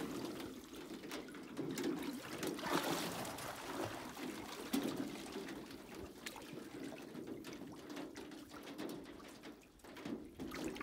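Water sloshing and trickling in a metal stock-tank pool as a tiger moves and stands up in it, water running off its fur, in uneven swells with a few short ticks.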